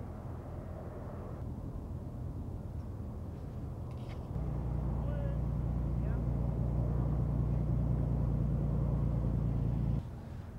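Supercharged 5.8-litre V8 of a 2013 Ford Shelby GT500 idling with a steady low rumble, which gets clearly louder about four seconds in.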